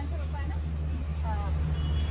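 Steady low hum of a car engine idling, with faint voices in the background.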